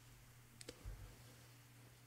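Near silence: the faint room tone of a voice-over recording, with one small click about two-thirds of a second in and a soft low bump just after.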